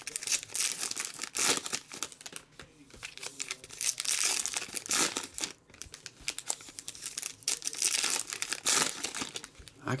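Foil trading-card pack wrappers crinkling and tearing as packs are ripped open and handled, in irregular bursts of rustling.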